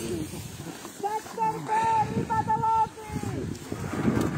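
A person's voice making several drawn-out, high-pitched wordless syllables, from about a second in until near the three-second mark.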